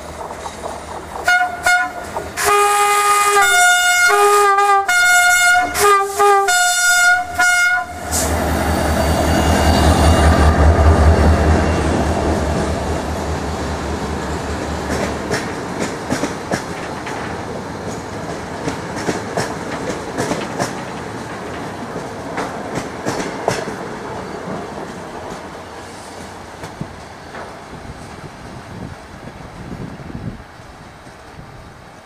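A diesel locomotive sounds a run of short, loud multi-tone horn blasts on changing notes. Its engine then passes close by with a deep, pulsing throb. The train's wheels follow, clicking over the rail joints and fading away.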